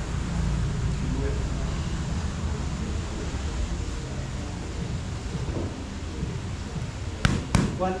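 Two sharp smacks of boxing gloves punching focus mitts in quick succession near the end, over a steady low background rumble.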